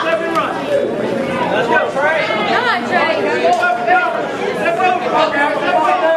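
Crowd of spectators talking over one another, many voices at once with no single speaker standing out.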